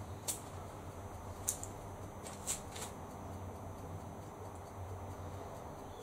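Low, steady electrical hum from powered lamp gear, with a few faint ticks scattered through.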